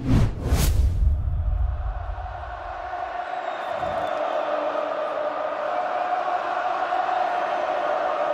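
Logo sting on an end card: a whoosh and deep boom, then a steady held chord that lasts on.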